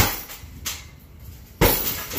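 Kicks landing on a hanging heavy punching bag: two sharp thuds about a second and a half apart, each followed by a softer knock as the bag swings on its stand.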